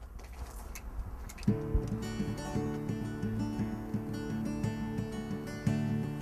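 An acoustic guitar is strummed, opening a song. It starts about a second and a half in, after a few faint clicks.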